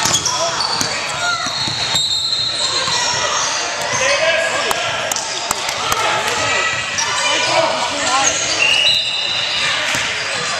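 Basketball game in a gymnasium: a ball bouncing on the hardwood court, short high sneaker squeaks, and the voices of spectators and players calling out throughout.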